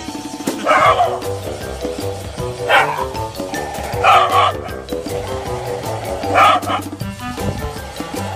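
Shiba Inu dogs barking, four sharp barks a second or two apart, over background music with a steady beat.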